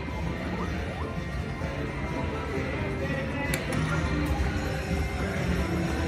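Aristocrat Tiki Fire Lightning Link slot machine playing its hold-and-spin bonus music while the reels spin, with one sharp click about three and a half seconds in.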